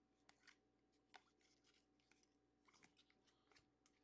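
Near silence, broken by a few faint clicks and rustles of trading cards being flipped through by hand: a couple in the first second and a small cluster about three seconds in.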